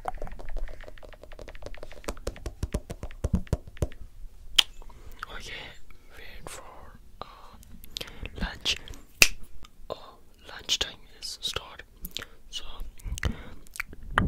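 Close-miked ASMR whispering into a handheld microphone, breathy and unintelligible, with many short sharp clicks scattered between the whispers.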